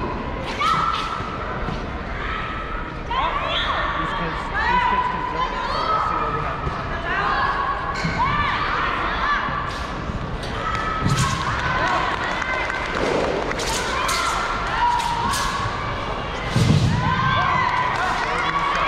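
Thuds of stamps and landings on a carpeted wushu floor during a sabre routine, the heaviest a body dropping to the floor near the end, over a steady chatter of voices in the hall.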